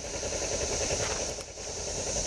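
Kawasaki Ninja 250R's parallel-twin engine idling, with a steady high-pitched buzz of cicadas over it.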